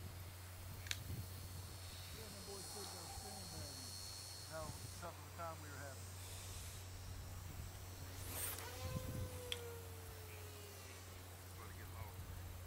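Faint open-air field ambience: distant voices over a steady low hum from wind on the microphone, with a brief rush of noise about two-thirds of the way through.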